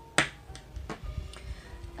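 A hand handling a cardstock note card on a tabletop: one sharp tap near the start, then a few faint ticks.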